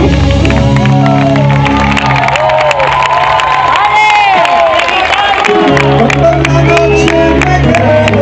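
A live rock band playing loudly. For a few seconds the bass and low chords drop out while the crowd cheers over sustained high notes, then the full band comes back in about two-thirds of the way through.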